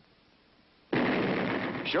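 Cartoon explosion sound effect: after near silence, a sudden noisy blast about halfway through that holds for about a second before a voice begins to speak.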